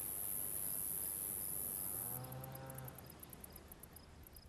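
Field insects such as crickets shrilling in one steady high-pitched drone, which breaks into rapid pulsed chirps about two seconds in. A faint low, drawn-out call sounds briefly in the middle.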